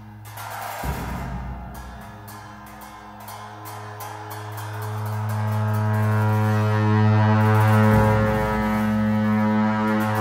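Tibetan Buddhist monastic ritual music: a deep, sustained drone rich in overtones that swells steadily louder from about four seconds in. Quick percussion strokes sound over the first several seconds.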